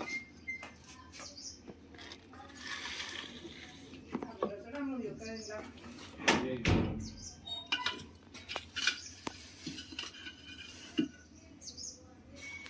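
Scattered clinks and knocks of a thin metal rod prodding among shoes, plastic and other clutter under a concrete platform, with one louder knock about six seconds in. Faint voices in the background.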